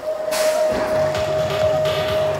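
BMX start-gate tone: one steady electronic beep held for about two seconds, cutting off sharply. A burst of clatter and rolling noise from the riders setting off down the start ramp comes in under it.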